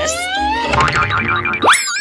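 Background music with comic cartoon sound effects: a long rising tone, then a wavering, wobbling tone, and a quick upward swoop near the end.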